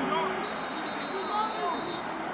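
Field-level stadium ambience with faint background voices, and a thin steady high tone that comes in about half a second in.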